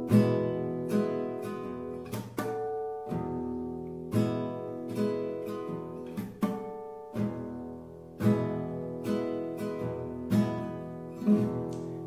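Nylon-string classical guitar playing a chordal introduction fingerstyle: chords plucked in a steady rhythm about once or twice a second, each left ringing, with no voice yet.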